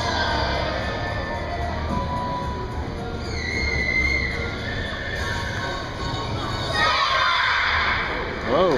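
Children's choir singing, with a high note held briefly about three seconds in as the song ends; audience applause starts about seven seconds in.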